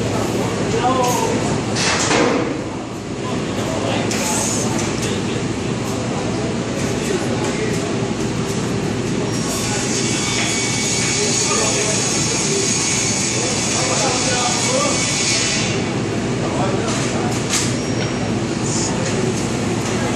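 Echoing din of a large working hall: a steady wash of indistinct voices and workshop noise, with a steady hiss for about six seconds in the middle.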